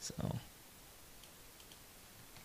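A few faint computer mouse clicks, short and sharp, spaced irregularly in the second half.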